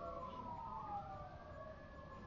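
A faint siren wailing, several slow glides in pitch falling and rising over each other.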